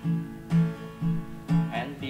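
Acoustic guitar, capoed, strummed in a steady rhythm of about two strums a second through G and B minor chords.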